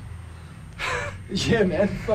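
A person's voice: a sharp breath about a second in, then wordless vocal sounds, over a steady low hum.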